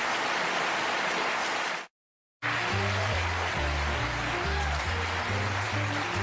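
Studio audience applauding, cut off abruptly about two seconds in by half a second of dead silence at an edit point, then the studio big band playing, with a bass line stepping from note to note under the horns.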